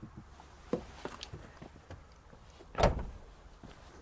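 Car door being handled: a few light clicks and knocks, then one heavier thump about three seconds in as the door is shut.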